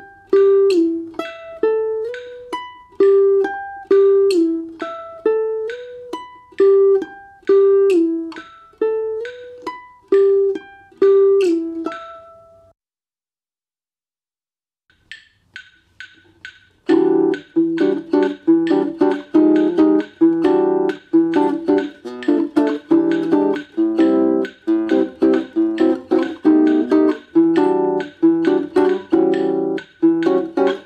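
Nylon-string guitar played solo: a short picked single-note phrase repeats over and over and stops about 13 seconds in. After a silence of a few seconds, a fast rhythmic run of full chords starts and carries on to the end.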